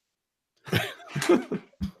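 A man laughing briefly, in four or five short breathy bursts that end with a low thump.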